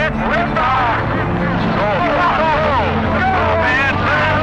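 Several men shouting and cheering excitedly over the steady low rumble of a Saturn I rocket at liftoff.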